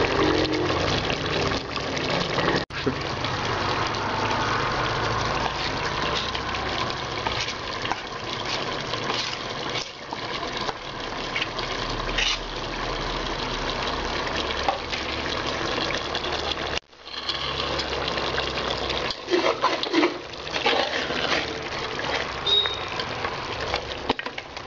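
A steady rushing hiss, with a metal spoon scraping and knocking against an aluminium cooking pot and a steel plate in a cluster of sharp clinks near the end.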